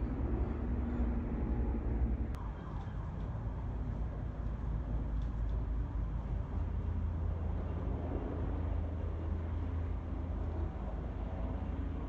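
Steady low rumble of a firefighting helicopter nearing over a burning ridge, growing slightly stronger about halfway through.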